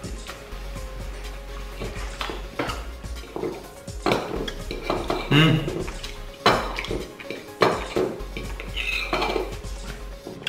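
Metal fork and spoon clinking and scraping against a ceramic plate while food is cut and scooped, a series of short sharp clicks, some ringing briefly.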